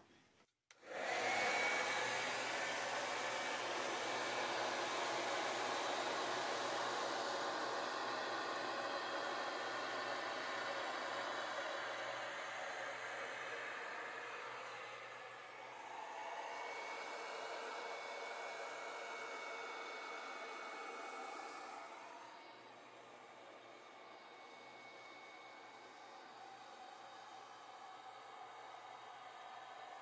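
Hand-held hair dryer blowing: a steady rush of air that starts about a second in, drops a little in level partway through and gets quieter again about two-thirds of the way along.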